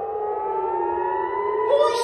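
Rocket-warning air-raid sirens wailing across the city, at least two out of step: one slowly rising in pitch while another slowly falls. They warn of incoming rockets.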